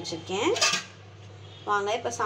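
Brief metallic clatter of a stainless steel bowl of chopped vegetables being handled, about half a second in.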